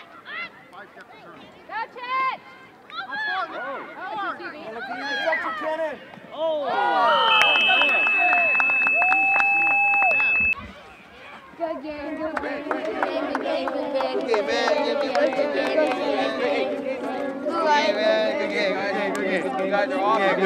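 Children shouting across the field, then a steady high tone lasting about three seconds, then a crowd of children's voices chattering all at once.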